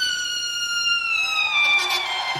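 Trumpet holding one high, sustained note that slowly sags in pitch and dips lower near the end, with little else from the band underneath.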